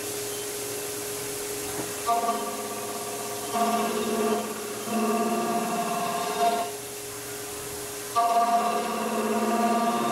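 CNC mill spindle running with a steady whine while a cutter machines the crankshaft seal bore in billet aluminum. A pitched, ringing cutting sound comes in several stretches from about two seconds in, over the hiss of coolant mist spray.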